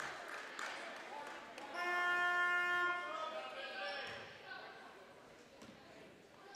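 Gymnasium scoreboard horn sounding once, a steady buzzing tone about a second long, about two seconds in, during a stoppage for substitutions. Low hall ambience with faint crowd voices around it.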